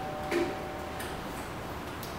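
Quiet lecture-room tone with a faint steady hum, a short voice sound near the start, and a single light click about a second in, typical of a laptop key press advancing a slide.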